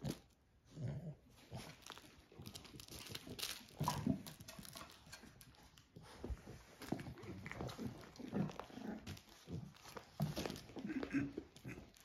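An adult dog and her six-week-old puppies playing together, with short, irregular dog vocalizations and scuffling on a rug.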